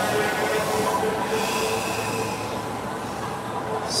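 Steady street-traffic noise from a large vehicle: a continuous rumble with a steady whine of several tones, easing off slightly near the end.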